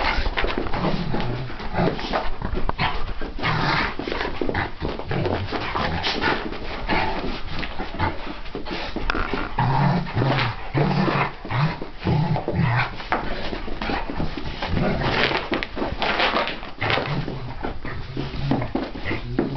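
A Springer Spaniel and an Old English Sheepdog play-wrestling, with a busy run of short, low dog growls over and over. Scuffling and panting run under the growls.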